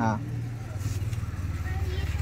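A vehicle engine idling nearby: a steady low throbbing hum that grows louder in the second half.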